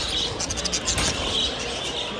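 A flock of caged budgerigars chattering in short, high chirps, with a brief cluster of clicks and rattles from about half a second to a second in.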